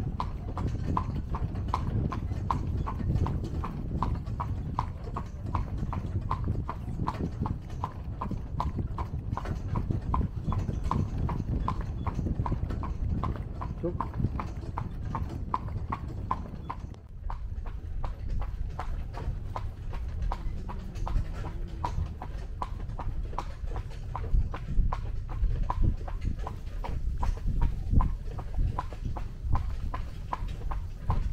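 Carriage horse's hooves clip-clopping in a steady, even rhythm of about three beats a second on a hard lane, over a low rumble. After about seventeen seconds the hoofbeats grow fainter and less regular.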